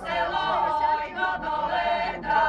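A choir singing, the voices holding long notes.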